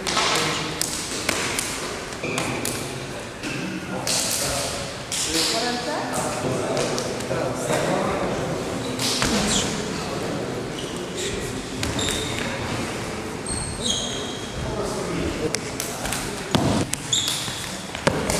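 Martial-arts partners' hands and bodies colliding in Wing Tsun self-defence drills: a scattered string of sharp slaps and thuds, echoing in a large hall, with talking throughout.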